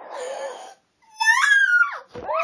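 A girl's mock wailing: a breathy sob, a short silence, then a loud drawn-out cry about a second in that rises in pitch and then falls away.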